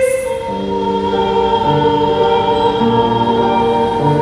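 A soprano's held sung note dies away at the start, and from about half a second in a grand piano plays slow sustained chords with low bass notes that change about every half second.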